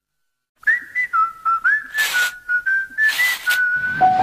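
After a moment of silence, someone whistles a short tune of clipped notes, sliding up into several of them. Two brief rushing noises come about two and three seconds in.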